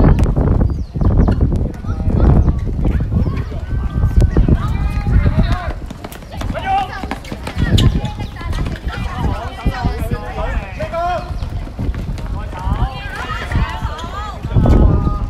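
A basketball bouncing on an outdoor hard court and players' sneakers running, with high-pitched girls' voices calling out during play.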